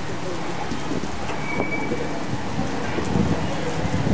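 Heavy rain falling steadily and splashing on a wet paved street and parked cars.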